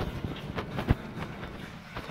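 Footsteps and a few irregular soft knocks from the handheld camera over faint room noise, the loudest knock just before a second in.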